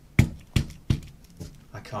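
A hand slapping down four times on a guitar effects pedal, the first knock the loudest. The knocks land on a Loknob Switch Hitter guard screwed over the footswitch, which keeps the switch from being pressed.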